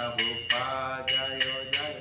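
Small brass hand cymbals (kartals) struck in an uneven devotional rhythm, about six ringing clashes in two seconds, while a man sings a chant with held notes.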